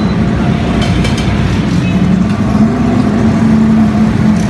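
An engine running steadily close by, a continuous low drone, over busy street noise.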